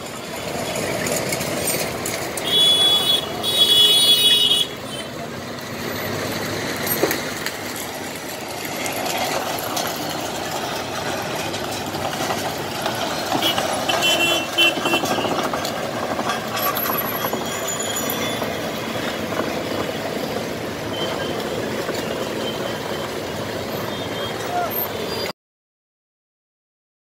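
Street traffic noise with heavy trucks running and indistinct voices. A brief high-pitched tone sounds twice, about three seconds in and again about fourteen seconds in. The sound cuts off just before the end.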